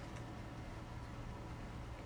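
Quiet room tone with a steady low hum and faint hiss, and no distinct event.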